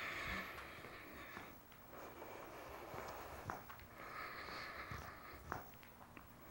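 Faint steady hiss with a few soft taps of feet stepping out and back on the floor during a seated stepping exercise.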